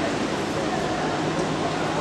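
Steady background noise of a large indoor training hall, with faint distant voices and no single sound standing out.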